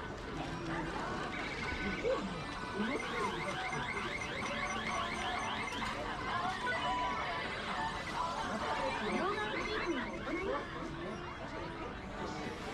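Street ambience of several people talking as they walk past, with music playing in the background.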